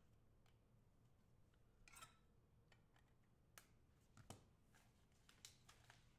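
Near silence, broken by a few faint clicks and a short rustle from a trading card and hard plastic card holders being handled.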